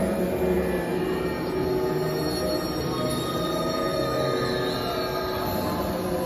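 Music of many long held tones layered at different pitches, with no steady beat.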